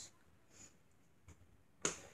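Quiet room tone with a faint click a little past a second in, then one sharp click near the end.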